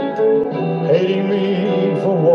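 Live band playing a slow ballad, with singing over the accompaniment.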